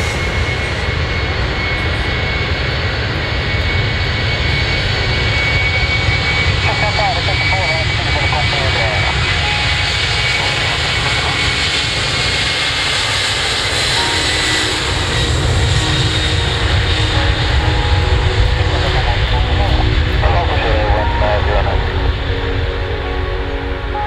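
Boeing 747-400 jet engines running close by: a deep rumble with a steady high whine that fades about halfway through, the engine noise swelling louder later as the jumbo moves off along the runway.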